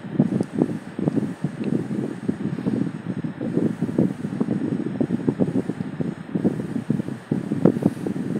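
Irregular low rustling and buffeting on the microphone of a handheld phone carried while walking, with scattered small knocks.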